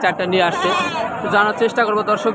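A goat kid bleating once, about half a second in: a short, quavering call lasting about half a second, with men talking over it.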